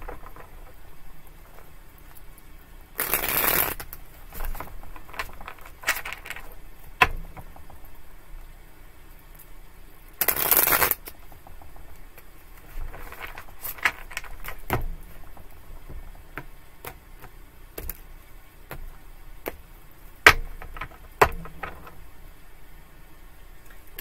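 A tarot deck being shuffled by hand, poker-style: two longer riffle shuffles, one about three seconds in and one about ten seconds in, among lighter taps, slides and clicks of the cards.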